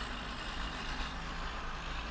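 Steady low engine rumble of a car stopped in traffic, heard from inside the cabin.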